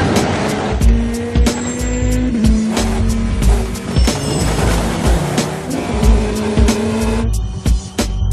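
Action-film chase soundtrack: driving music with a steady beat mixed with cars speeding past, engines running hard. The dense noise thins out shortly before the end.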